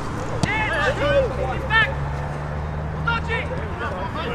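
Short, high-pitched shouts and calls from people on and around a football pitch during play, several in quick succession, over a low steady hum.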